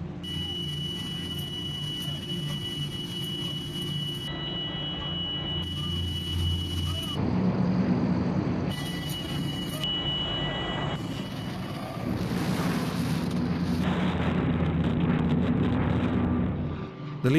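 Steady drone of a transport plane's propeller engines, its tone shifting abruptly from shot to shot, with a rushing wind noise building over the last few seconds.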